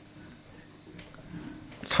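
Faint handling sounds as a small riveted steel chainmail ring is set into the jaws of a small bench vise, with one light metallic tick about a second in.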